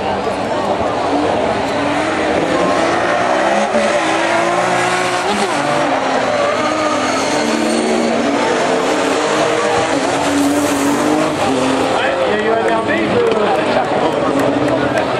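Several rallycross cars racing, their engines revving hard, with pitches rising and falling through gear changes and overlapping one another.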